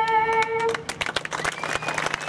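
A solo singer holds the long last note of the national anthem, which stops about three-quarters of a second in. A crowd then breaks into clapping and applause.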